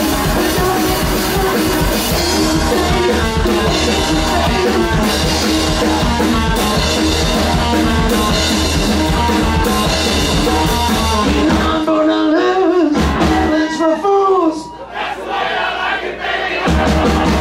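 Rockabilly band playing loud, with drums, bass and electric guitar and some singing. About twelve seconds in, the drums and bass drop out, leaving a run of sliding, bending notes.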